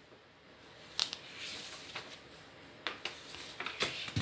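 A few light taps and knocks on a wooden tabletop as a cat paws at white rolls and pushes them about: one tap about a second in, then several near the end.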